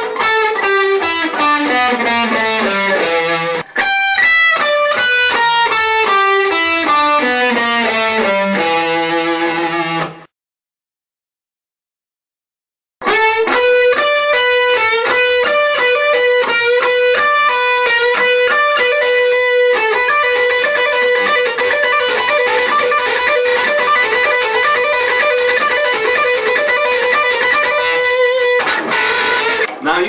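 Electric guitar playing two fast runs stepping down a pentatonic scale with an added flat fifth, the blues scale. The sound cuts out completely for about three seconds. The guitar then plays a quick repeating lead lick that keeps returning to the same high note.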